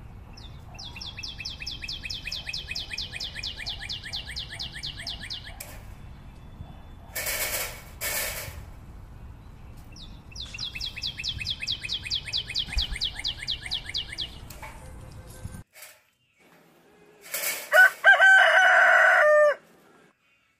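A rooster crowing loudly near the end, one held call of about two seconds. Earlier come two long, rapid, high-pitched trills of about eight pulses a second, each lasting some five seconds, and two brief rushes of noise in between.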